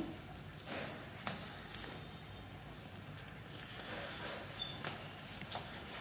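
Quiet room tone with faint rustling and a few soft, scattered clicks of handling and movement.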